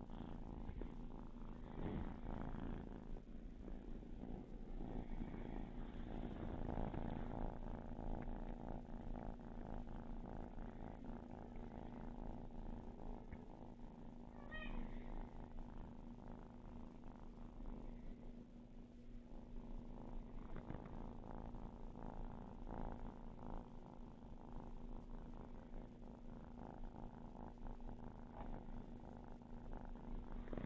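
A kitten purring steadily up close while it is being petted.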